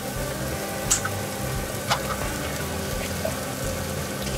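Shallots, ginger and curry powder sizzling gently in a cast-iron Dutch oven, a steady hiss with a faint steady hum, broken by a few short clicks about one and two seconds in.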